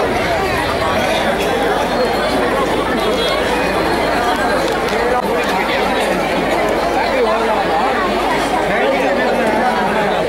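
Large seated crowd chattering: many voices talking over one another at a steady, even level.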